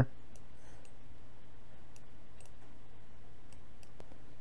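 A few faint, sharp computer mouse clicks, scattered irregularly, over a steady low electrical hum.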